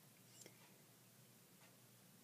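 Near silence: faint room tone, with one brief faint sound about half a second in.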